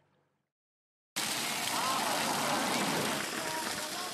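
Silence for about the first second, then a sudden start of steady rushing and splashing water as it pours out of plastic jugs and onto the road surface.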